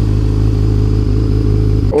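Yamaha YZF-R6 sport bike's inline-four engine running at a steady, even note, heard from the rider's helmet camera.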